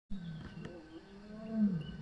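Lions roaring: a long, low moaning call that swells to its loudest about one and a half seconds in and then falls in pitch.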